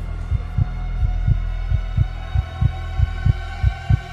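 Suspense music cue built on a heartbeat sound effect: low double thuds, lub-dub, a little over once a second, over a steady low drone with a few held higher tones.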